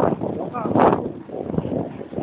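Wind buffeting the phone's microphone in loud, rushing gusts, loudest near the start and again just under a second in. A few short high chirps sound about half a second in.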